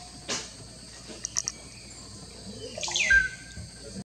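Forest ambience: insects chirring steadily, with bird calls over it. A few quick high chirps come about a second and a half in, and near the end comes a louder call that slides down in pitch and ends in a short steady whistle.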